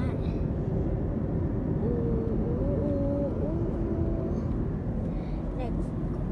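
Steady low road and engine rumble heard inside a moving car's cabin. A faint voice comes in briefly in the middle.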